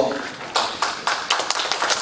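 Audience applauding with many irregular claps, starting about half a second in.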